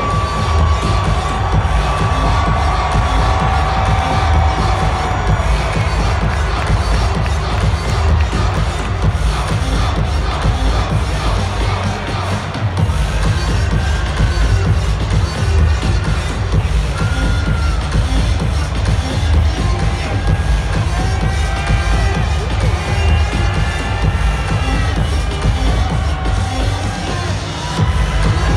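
Arena sound-system music with a heavy, pulsing bass beat, over a crowd cheering.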